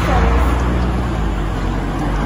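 A loud, steady low rumble, strongest in the first half, with faint voices near the start.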